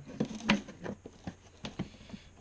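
Light clicks and knocks of hard plastic as clear plastic jars and their black screw-on lids, with tubing through them, are handled and moved on a bench; the loudest knock comes about half a second in, with a few smaller clicks after it.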